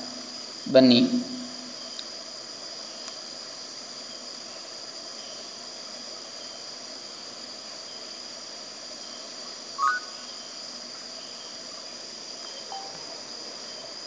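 Steady background hiss with a continuous high-pitched tone, broken by a short voice sound about a second in and a brief faint blip near the end.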